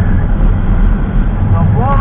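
Loud, steady wind noise on the microphone over the drone of a Hero Passion Plus, a 100 cc single-cylinder motorcycle, riding at cruising speed; a man starts speaking near the end.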